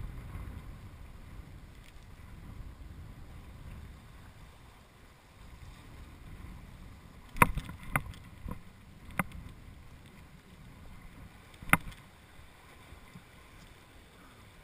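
Low wind rumble on the microphone at the lakeshore, then a handful of sharp clicks and knocks from handling a spinning rod and reel while casting a lure: four in quick succession about seven to nine seconds in, and one more, the loudest, near twelve seconds.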